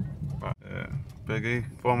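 Small car's engine and tyre drone inside the cabin on an unpaved road, cutting out abruptly about half a second in, then running on; a man's drawn-out voice starts in the last half second.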